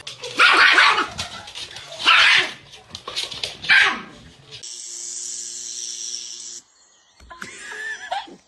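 Dog barking loudly three times, about a second and a half apart, followed by a steady hum lasting about two seconds.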